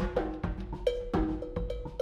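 Drum kit played with the hands: a run of quick strikes on the drums, some with pitched tones, and a ringing tone that starts about halfway through and holds.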